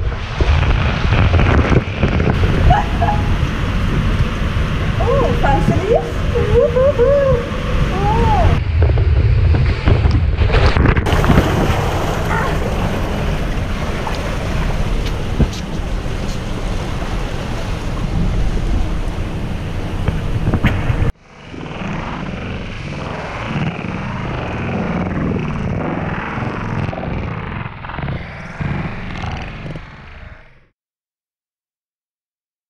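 Water and air rushing over a GoPro sliding down an enclosed tube water slide, a loud steady rumble of water and wind on the microphone, with a rider's whoops rising and falling a few seconds in. About two-thirds of the way through it drops suddenly to a quieter rush of water on a second slide run.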